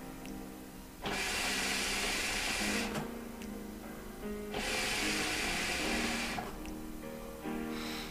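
A hookah is drawn on through an ice-pack mouthpiece and the smoke is breathed out: two stretches of airy hiss, about two seconds each, the first starting about a second in. Quiet background music plays throughout.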